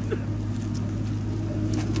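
A motor running with a steady low hum, with a few faint clicks near the end.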